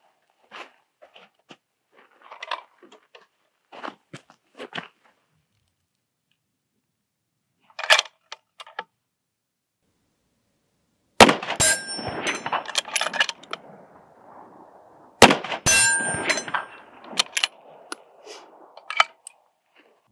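Two shots from a bolt-action precision rifle, about four seconds apart, each followed by a metallic ring and a long fading echo. The bolt is worked with metallic clicks after each shot, and small handling clicks come earlier as the rifle is settled on the bag.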